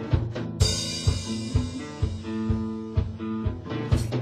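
Live rock band playing an instrumental passage of a song: a drum kit keeps a steady beat of about two hits a second under electric guitar and bass, with cymbals coming in about half a second in.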